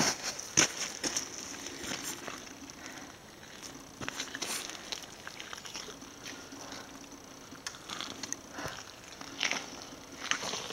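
Faint, irregular crunching and clicking of footsteps on a trail of wet, packed snow and mud.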